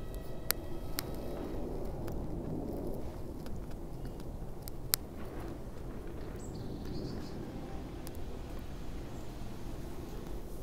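A lighter held to a cigarillo to light it, with sharp clicks about half a second and a second in and another about five seconds in. Soft, steady background noise runs under it.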